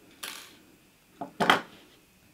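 Light handling sounds of thin copper wire and small jewellery tools: a soft rustle about a quarter second in, then two sharper clicks about a second and a half in.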